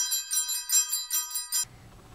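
Rapid ringing of a bell, used as an edited-in sound effect, about seven strikes a second. It cuts off suddenly about one and a half seconds in.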